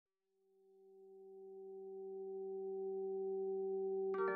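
A steady synthesized drone of a few pure tones stacked in octaves, fading in from silence about a second in and slowly swelling: the opening of a meditative music track.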